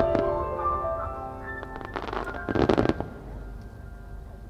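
Fireworks bursting in a dense cluster of sharp cracks and bangs about two to three seconds in, over music with sustained notes that fades after the bursts.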